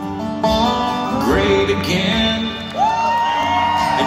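Live acoustic country band music: strummed acoustic guitars with a lap-played slide guitar, its notes gliding up into a long held note about three seconds in.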